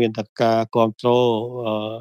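Speech only: a male voice narrating in Khmer at an even, fairly level pitch.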